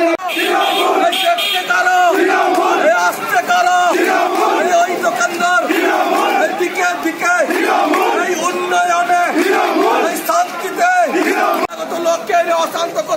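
Crowd of protest marchers shouting slogans, many voices together, loud and continuous.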